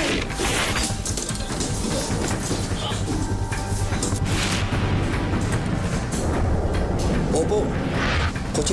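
Dramatic background score under the thuds and scuffling of a fight, with a heavy thud about half a second in as a man falls down a flight of stairs and another strike a few seconds later.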